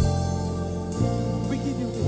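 Live gospel praise band playing sustained keyboard chords over low bass notes. A drum hit lands as it begins, and the chord changes about a second in.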